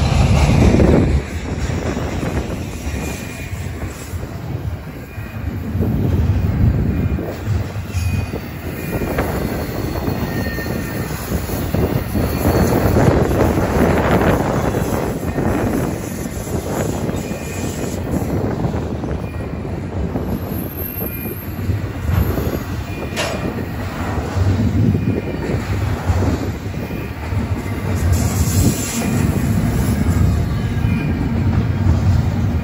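Double-stack intermodal freight train's container well cars rolling past at close range: a continuous rumble and clatter of steel wheels on the rails that rises and falls as the cars go by. A few faint, brief high-pitched wheel squeals sound over it.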